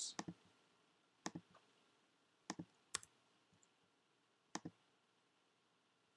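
Computer mouse button clicking: a handful of short sharp clicks, some in quick pairs, spread over the first five seconds, over near silence.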